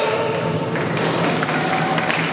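Figure-skating program music ends as applause with many sharp claps starts in the rink, about a third of the way in.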